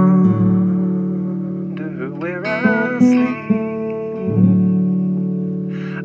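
Acoustic guitar in open D tuning strummed, its chords and low open-string drones ringing on between fresh strums. About two seconds in, a voice comes in singing a long, wavering line over the guitar.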